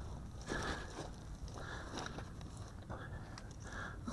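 Footsteps on dry grass: a few faint steps about a second apart.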